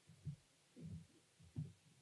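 Faint low thumps, three in about two seconds: footsteps on the stage.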